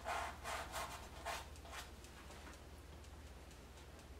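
Small brush stroking oil paint onto stretched canvas: about six short strokes in the first two and a half seconds, then quieter, over a steady low hum.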